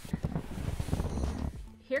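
Clothing rustling and shuffling close to the microphone as a seated person pulls her pants up, a dense scuffling stretch that dies away after about a second and a half.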